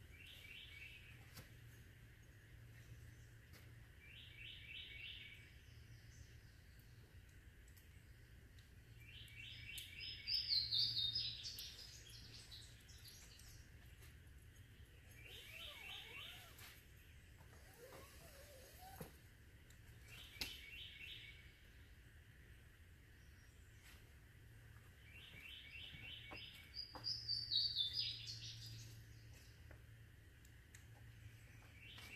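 A bird singing a short phrase of quick repeated notes about every five seconds, twice running on into a higher, louder trill, over a faint steady low hum with a few light clicks.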